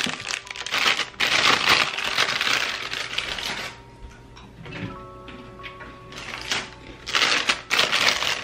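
Clicks and clatter of a plastic lunch box and containers being handled on a kitchen counter, then quieter for a few seconds, with a plastic bag rustling near the end. Soft background music plays throughout.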